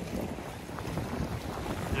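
Wind buffeting the microphone, with sea water washing over the rocks and kelp along the shore.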